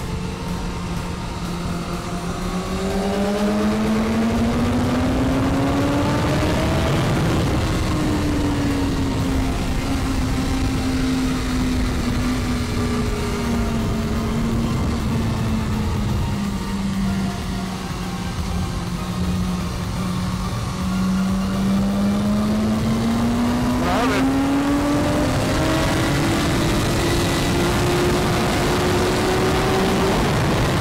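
BMW S1000RR inline-four engine under way, heard from onboard over heavy wind noise: the revs climb for the first several seconds, ease back slowly through a long corner, then climb again near the end as the bike drives out onto the straight.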